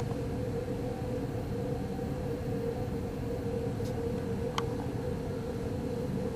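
Steady mechanical room hum with a constant mid-pitched tone, and a couple of faint clicks a little past the middle.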